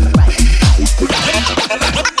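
Minimal tech house track: a four-on-the-floor kick drum about twice a second over a sustained bass line. About a second in, the kick drops out and wavering, up-and-down pitch sweeps take over the upper range as a build into a break.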